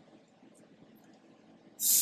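Near silence with faint room tone, then near the end a short, loud hiss from a man's mouth, like a hissed consonant.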